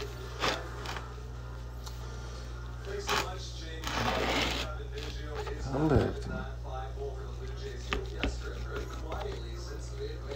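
A knife cutting through a ham on a cutting board, with a few short knocks, over a steady low hum. A baseball game's TV broadcast plays in the background. A brief falling sound near the middle is the loudest moment.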